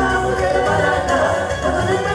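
Two women singing into microphones, backed by a live Latin band with a cuatro, bass and percussion.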